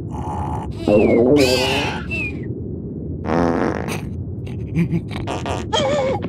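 Cartoon sound effects: a loud, buzzy pitched blast about a second in and a shorter one just past three seconds, then a run of short clicks and squeaks near the end.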